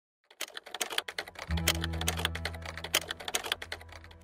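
Rapid, irregular typing clicks, a keyboard sound effect, starting a moment in and running until near the end. About a second and a half in, music with a deep, steady bass note comes in under the clicks.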